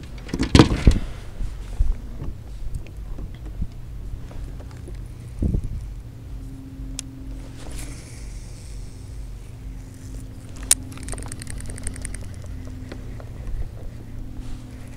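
Knocks and thuds of a fishing rod and gear being handled in a kayak, then a baitcasting reel being cranked, its fast fine ticking heard about three-quarters of the way through, over a steady low hum.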